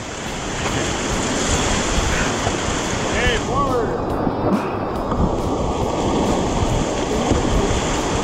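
Whitewater rapids rushing and splashing around an inflatable raft, with wind buffeting the action camera's microphone. A short burst of voice about three seconds in.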